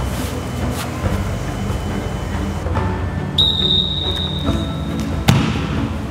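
Background music, joined about three seconds in by a steady high tone, then one sharp thud about five seconds in as a football is kicked.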